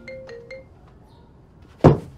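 A phone's marimba-style ringtone plays its last few quick notes and stops about half a second in. Near the end comes a single short, loud thump.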